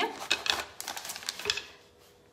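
A spatula scraping and tapping soft whipped cheese into a nylon piping bag, giving a run of small irregular clicks and scrapes for about a second and a half.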